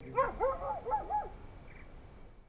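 Night-time ambience for a logo sting: crickets chirping steadily, starting abruptly, with an owl giving about five short hoots that rise and fall in pitch in the first second or so. The cricket sound swells briefly near the end.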